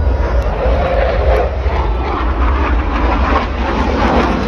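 Aircraft flying overhead: a continuous rushing rumble that grows louder about halfway through.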